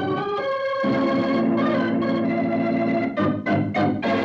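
Organ music playing held chords, shifting to a fuller, lower chord just under a second in, with a few quick sweeping runs near the end.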